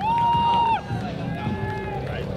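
Tyres of a drifting car squealing in one strong, steady, high-pitched squeal of under a second that drops away, then a fainter squeal near the end.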